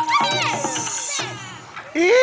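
Recorded dance music that stops about a second in, with high-pitched voices shouting and calling over it.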